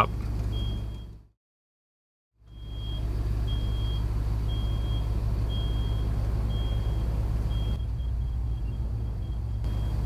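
A car's steady low rumble as heard inside its cabin, dropping out completely for about a second near the start and then returning. Over it a faint high beep repeats about once a second, in the manner of a reversing alarm.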